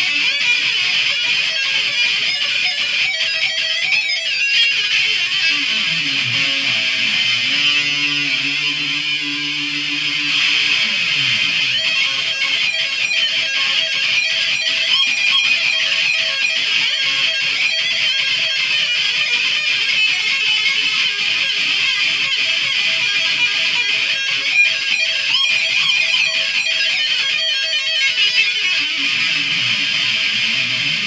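Electric guitar played through an amplifier, running arpeggios without a pause.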